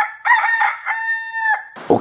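A rooster crowing once: a cock-a-doodle-doo of a few short notes rising into a long held final note.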